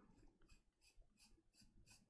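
Faint scratching of a coloured pencil on paper, in quick short strokes about four or five a second, as a small area is coloured in.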